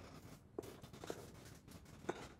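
Near silence: faint room tone with a couple of soft, brief ticks, about half a second and a second in.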